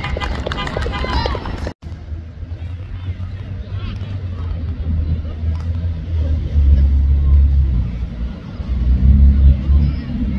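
Outdoor sideline sound at a youth rugby match: faint spectators' voices over a heavy, gusty low rumble of wind on the microphone, which grows stronger in the second half. The sound cuts out for an instant about two seconds in.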